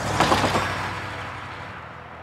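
A van driving past close by and away down the street, its tyre and engine noise swelling suddenly and then fading over about a second and a half.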